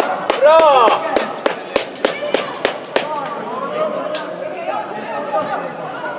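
A quick, even run of about ten sharp claps, about three a second for some three seconds, over a man's shout and the chatter of spectators in a large indoor hall.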